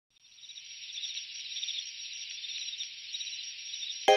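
The opening of the cover's backing track: a high, hissing texture with a fine chirping flutter fades in over about a second, then holds steady.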